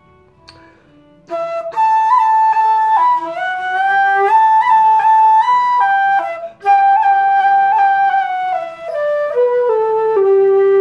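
Irish flute playing a slow phrase of a tune, one note at a time in steps. It comes in about a second in and pauses briefly for a breath around the middle, then steps downward to a long, low held note at the end.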